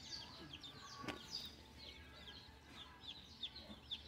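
A brood of baby chicks peeping, faintly: many short, high peeps that fall in pitch, several a second. A single sharp click about a second in.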